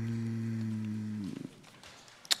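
A man's long drawn-out hesitation sound "euh", held at one steady low pitch, trailing off about a second and a quarter in.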